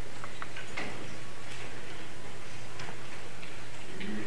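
Room tone with a steady low hum and scattered light clicks and taps.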